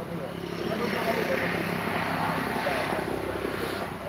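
A motor vehicle passing by: its engine noise swells about a second in and fades towards the end.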